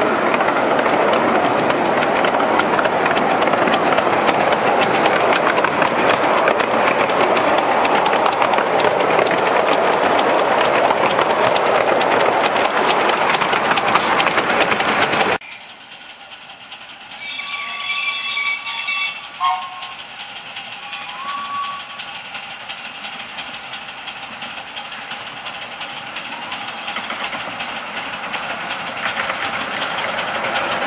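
Miniature ride-on steam train: a loud, steady rushing rumble of riding aboard behind the locomotive, which cuts off suddenly halfway. Then the small steam locomotive sounds its multi-note chime whistle for about two seconds as it approaches, followed by two shorter toots over its quieter running.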